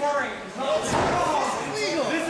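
Voices shouting in a large hall, with a heavy thud of a wrestler's body landing on the ring mat a little under a second in.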